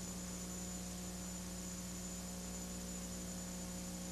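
Steady electrical hum with a faint hiss, a recording's noise floor with no other sound over it.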